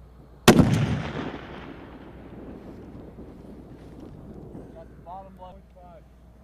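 .50 caliber sniper rifle firing a single shot about half a second in: one sharp, very loud report whose rumble dies away over about two seconds.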